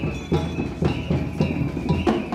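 Street drum band playing large strapped drums on the march, a steady beat with about two strong strikes a second and a sustained high tone running over it.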